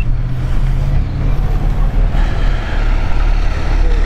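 A motor vehicle passing on the road: a loud low rumble with tyre noise that grows stronger past the middle.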